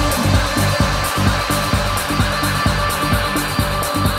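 Electronic dance music from a live DJ set over a large sound system: a steady kick drum at about two beats a second, with hi-hats ticking over a sustained synth bed.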